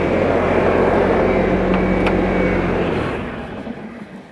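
Bobcat skid-steer loader's diesel engine running steadily, then shut off about three seconds in and dying away.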